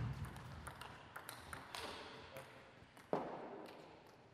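Table tennis ball clicking in quick succession off rackets and the table during a rally, with a louder knock about three seconds in as the point ends.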